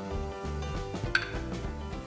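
Background music with sustained notes and a bass line, and a single sharp metallic clink of a utensil against a stainless-steel saucepan about a second in.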